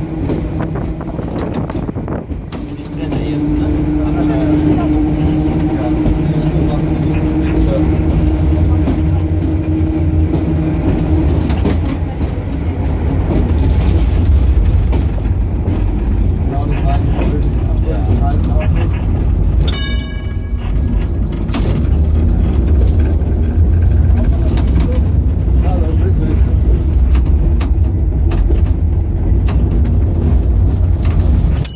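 1926 electric tramcar running on its rails, heard from the open front platform: a steady low rumble of wheels and running gear with clicks over the rail joints, and a steady hum for a stretch early on. A brief high ringing comes about twenty seconds in.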